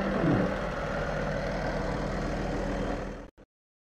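John Deere 8410 tractor's six-cylinder diesel engine idling steadily, fading out and cutting to silence a little after three seconds in.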